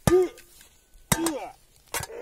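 Metal spade striking in the dirt with three sharp metallic clanks about a second apart, each ringing briefly.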